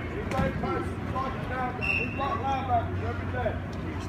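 Men's voices talking and calling out over one another during a football drill, with no single clear speaker. A short high tone sounds about two seconds in, and a low steady hum comes in during the second half.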